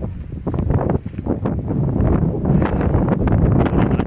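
Wind buffeting the microphone: a loud, gusty rumble with irregular crackles.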